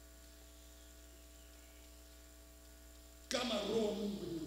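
Faint, steady electrical mains hum from the sound system, then about three seconds in, room noise with a voice cuts in abruptly.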